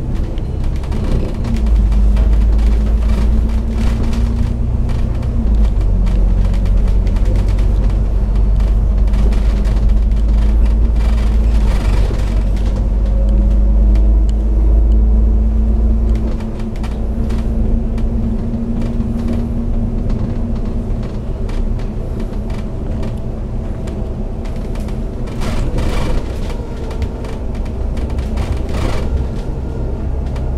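Double-decker bus engine and driveline heard from inside the cabin, running hard as it pulls away from the toll booths, with a deep rumble, a drawn-out whine and small interior rattles. About sixteen seconds in the load eases and the deep rumble drops away.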